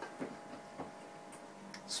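Faint clicks and taps of small hot sauce bottles being handled and lifted off a plate, with a few sharper ticks in the second second.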